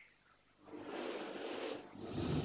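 Soft, slow breathing close to a microphone: one breath begins a little over half a second in and lasts about a second, and another starts right at the end.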